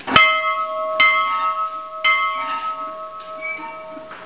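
Large hanging bell struck three times by its clapper, about a second apart, each strike ringing on in a long, slowly fading tone.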